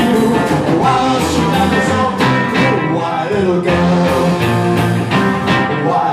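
Live rock and roll band playing, with electric guitars, upright double bass and drums keeping a steady beat, and a sung vocal over it.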